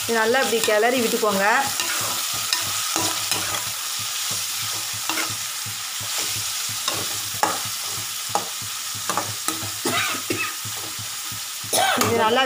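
Raw prawns sizzling in hot oil in a metal pot while a metal ladle stirs them, with irregular scrapes and clinks of the ladle against the pot over a steady hiss of frying.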